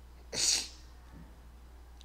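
A single short, hissing burst of breath from a person, about half a second in.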